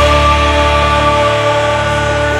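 A rock band's final chord held on guitars, ringing out steadily and slowly fading.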